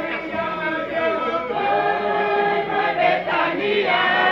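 A group of voices singing together in chorus, several pitches sounding at once in a chant-like song.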